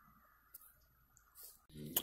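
Near silence broken by a few faint, short clicks, the sharpest just at the end.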